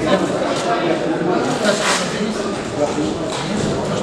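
Indistinct voices of several people talking in a large sports hall.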